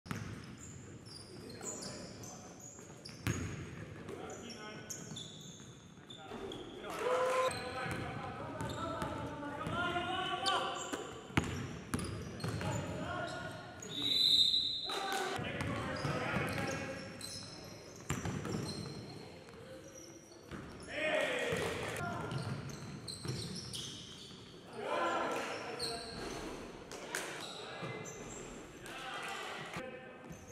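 Live basketball game audio: a basketball dribbled on a hardwood gym floor in repeated sharp bounces, with players' voices mixed in, all echoing in a gymnasium.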